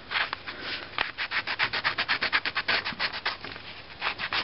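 Pen scratching on paper in quick, rapid back-and-forth strokes while sketching lines, about eight to ten strokes a second, with a short lull near the end.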